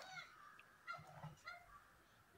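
Faint clinks and scrapes of a metal ladle stirring rice in a pot of hot water, with a faint honking call, like a goose's, behind it.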